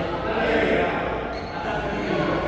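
Indistinct voices and thuds echoing in a large indoor sports hall, the ambience of a badminton venue between rallies.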